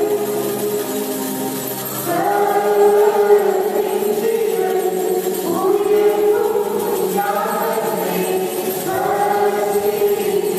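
Choir singing a church hymn, with long held notes that change every second or two.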